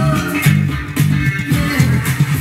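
Slap bass on a Status 3000 carbon-fibre headless electric bass, played through an amp in a rhythmic funk line of short, punchy low notes, over a recorded funk backing track.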